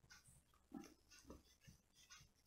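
Near silence: room tone with a few faint, brief noises.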